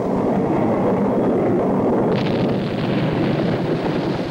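A long, rumbling explosion sound effect, its blast noise steady throughout, with a harsher hiss joining about two seconds in.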